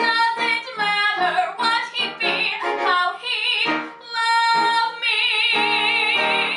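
A woman singing a musical theatre song in short phrases, ending on a long held note with wide vibrato that starts about five seconds in.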